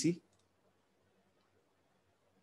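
The end of a man's spoken word, cut off almost at once, then near silence.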